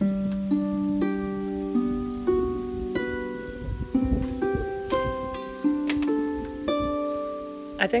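Double-strung harp, left hand plucking a syncopated 1-5-8 bass pattern (root, fifth and octave). There are about a dozen notes in an uneven rhythm, each ringing on under the next.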